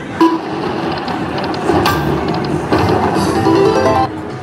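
Corrida de Toros video slot machine playing its electronic reel-spin sounds and game music through one spin. Short pitched notes build near the end as the spin lands a small win.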